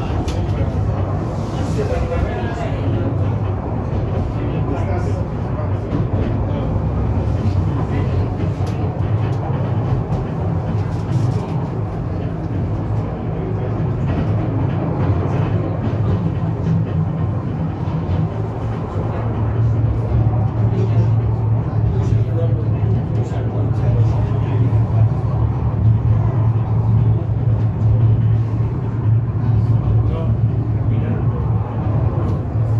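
Steady running noise inside a funicular car on its way down the track, a low hum with rumble from the running gear that grows louder about two-thirds of the way through.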